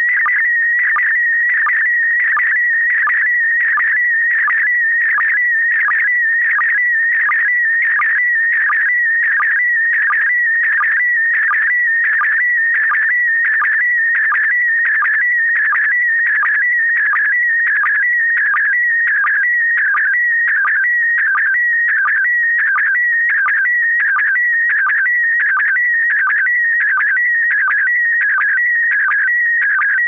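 Slow-scan TV (SSTV) picture transmission: a steady high warbling tone that wavers in pitch as it traces the picture, broken by a short sync pulse at the start of each scan line in an even, repeating rhythm.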